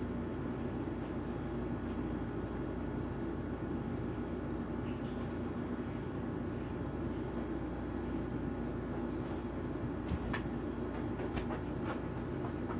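Window air conditioner running with a steady hum, with a few light knocks near the end.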